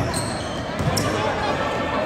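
Basketball being dribbled on a sports-hall floor: a few bounces with short high squeaks about a second apart.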